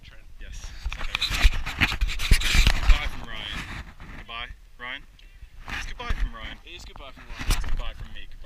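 Men talking and laughing breathlessly. About a second in there are two or three seconds of loud, hissing breath noise.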